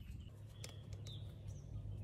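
Quiet outdoor background with a steady low hum and a few faint, short bird chirps.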